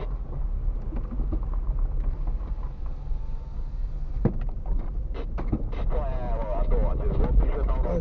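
Low, steady rumble of a car's engine and tyres moving slowly over rough unpaved ground, heard from inside the cabin. A few sharp knocks come around four to six seconds in.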